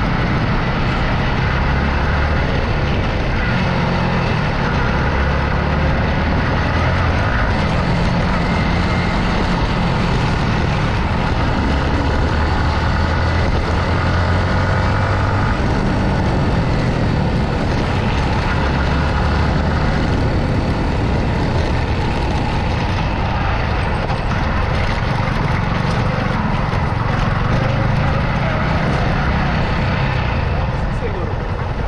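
Yamaha MT-15's single-cylinder engine through its stock exhaust, running under way. Its note rises and falls every few seconds as the throttle opens and closes.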